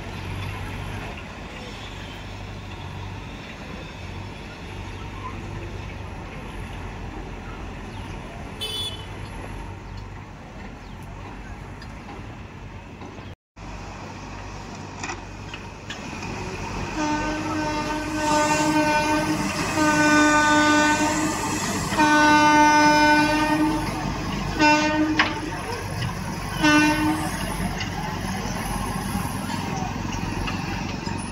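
Train horn sounding five times, blasts of one to two seconds each, in the second half, over a steady low rumble.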